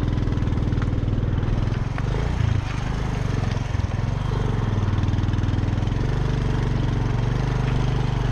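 Motorcycle engine running steadily at low speed.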